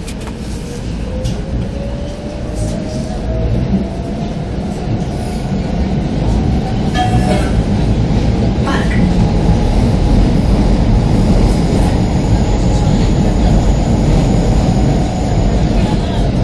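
A CAF Boa metro train pulling away into the tunnel, heard from inside the carriage. A motor whine rises in pitch over the first few seconds as it accelerates, and the rumble of wheels on rail grows louder and then holds steady.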